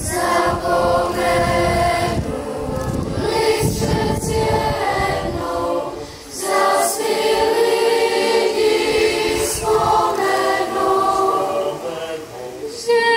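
Children's choir singing sustained phrases, with a brief break for breath about six seconds in.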